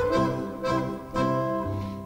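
Instrumental passage of Erzgebirge folk music: accordion, guitar and zither play between sung lines, with a bass note about twice a second.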